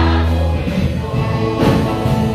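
Mixed church choir of adults and children singing a worship song together in sustained notes, with a low bass tone under the voices in the first half.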